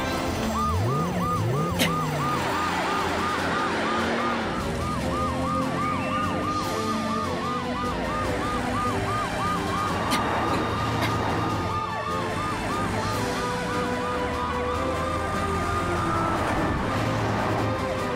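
Cartoon emergency-vehicle sirens: a fast yelping siren sweeping about four times a second, joined about halfway by slower rising and falling wails, over background music.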